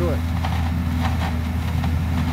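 Leaf vacuum truck running steadily, its engine and vacuum blower making a constant low drone as leaves are sucked up the large intake hose.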